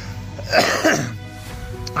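A man coughing, a short double cough about half a second in, over faint background music.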